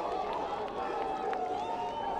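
Rugby spectators along the touchline calling out and talking over one another, several voices at once, with no one voice standing out.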